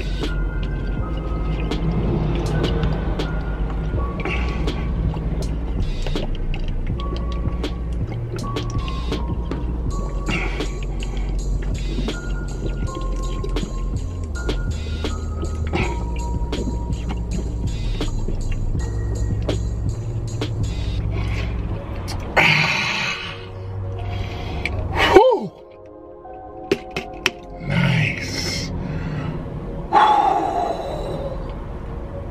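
Hip-hop background beat with steady bass and percussion. Near the end the beat cuts off on a quick downward pitch sweep, and a man breathes out hard a few times after chugging two bottles of Vitamin Water.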